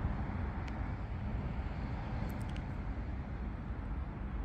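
Steady, low outdoor background rumble with no distinct event, and a few faint clicks about two and a half seconds in.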